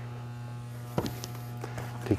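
A steady low electrical hum with a buzzing tone, unchanged throughout, with one light click about a second in.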